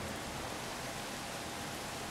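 Steady outdoor ambient noise, an even hiss with a faint steady hum underneath.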